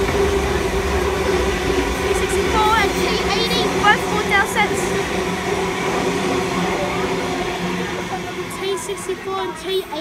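Sydney Trains Tangara electric multiple unit passing alongside the platform: steady wheel-on-rail running noise with a low steady hum, easing off near the end as the last car goes by.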